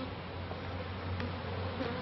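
Honeybees buzzing around an open hive, a steady hum of many wings.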